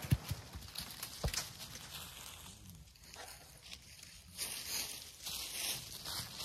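The echo of a .30-30 rifle shot fading away, then a few sharp knocks in the first second and a half as hedge apples (Osage oranges) knocked off the bench hit and bounce on the leaf-covered ground. Faint rustling in the leaves follows.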